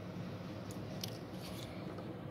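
A few short, sharp clicks and crunches as the copper wires of a network cable are pressed into the terminal slots of an RJ45 jack module, over a steady low hum.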